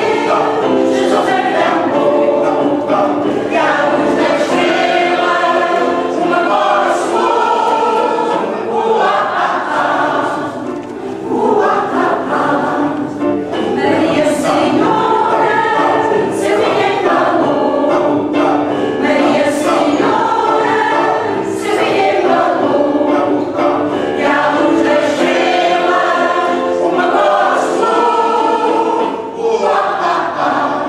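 Mixed choir of older singers performing a Portuguese Janeiras song, a traditional New Year carol, sung in phrases with short breaks between them.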